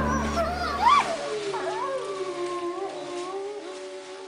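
A long canine howl: a rising cry that peaks about a second in, then a held, wavering howl that slowly fades.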